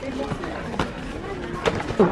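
Low, indistinct voices and shop background, with two short knocks as a cardboard box of Christmas crackers is turned over in the hands.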